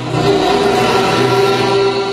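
A man's voice holding one long, steady chanted note in a sung recitation of Pashto poetry, heard over a microphone.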